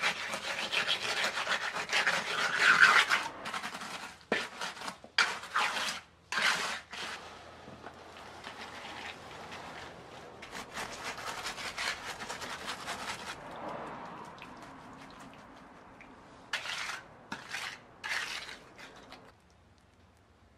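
Pointed trowel scraping and pushing wet cement mix into the gaps between clay roof tiles set on edge: a long spell of dense scraping, then short separate strokes, a quieter stretch, and a few more short scrapes near the end.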